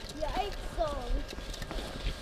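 A young child's high voice calling out in short, gliding vocal sounds, with a few light clicks from cross-country skis and poles on packed snow.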